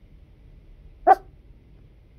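A dog barks once, a single short bark about a second in, over a faint low background hum.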